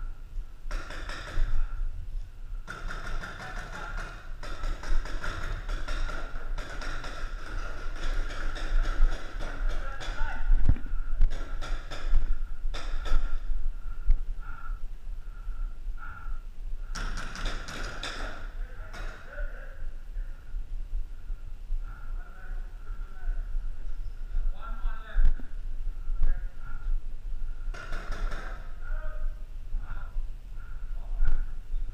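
Indistinct voices of paintball players calling out across an indoor arena during a game, with scattered thuds and taps.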